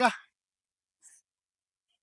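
A man's spoken word trailing off into a short breathy exhale, then near silence.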